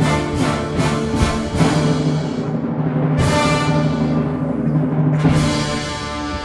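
Opera orchestra playing loud, with no singing. Evenly repeated percussion strokes come about two and a half a second for the first two seconds, then the orchestra holds chords, broken by two single accented strokes about three and five seconds in.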